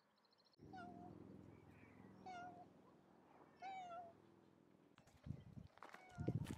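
Three short, wavering animal calls, evenly spaced about a second and a half apart, over a faint low steady hum. A few low thumps come near the end.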